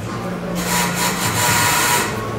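A thumb rubbing over the purple nubuck suede toe box of an Air Jordan 5 'Alternate Grape' sneaker close to the microphone. It makes a dry, scratchy hiss that starts about half a second in and runs steadily on.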